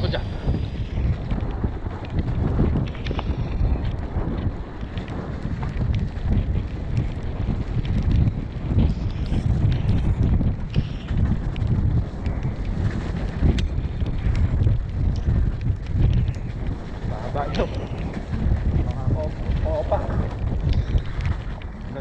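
Mountain bike descending a forest singletrack at speed, heard from a rider-mounted camera. Wind buffets the microphone in a constant low rumble, under frequent clicks and knocks from the tyres and bike over the rough trail. A faint voice comes in briefly near the end.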